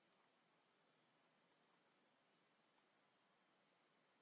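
Faint computer mouse clicks against near silence: one just after the start, a quick pair about halfway through, and one more about three seconds in.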